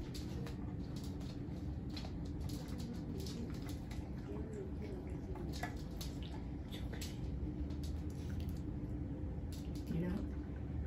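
Faint scattered clicks and handling noises as pieces of honeycomb are fitted into a clear plastic comb box, over a steady low hum.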